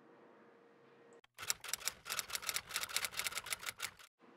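Typewriter keys clacking in a quick run of sharp strikes, about ten a second, starting about a second and a half in and stopping just before the end. It is a sound effect laid over a question typed out on screen.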